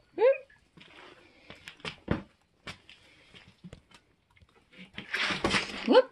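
Scattered scuffs and knocks of a hiker's steps and gear on wet rock, with a short gliding vocal sound just after the start. Near the end comes a louder rush of noise that ends in a rising vocal sound.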